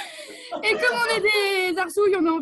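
A woman's voice making a long, wavering 'ooh' that slowly falls in pitch, after a short breathy hiss, as a laughter-yoga vocal exercise.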